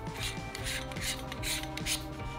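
A 77 mm filter adapter ring being screwed by hand onto a lens's filter thread: short raspy scrapes, about three a second, as the fingers turn it round. Background music plays underneath.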